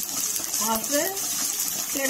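Chopped red onions frying in oil in a stainless steel pan, a steady sizzle, while a steel spoon stirs them.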